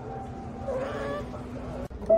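A piano chord left ringing and slowly fading, with a brief wavering high-pitched voice about a second in; the sound cuts off abruptly just before the end.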